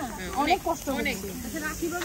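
People talking close by over a steady hiss of meat sizzling on a charcoal grill.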